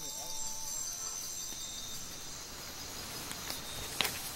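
Night-time insect chorus: a steady, high-pitched drone of many insects calling at once.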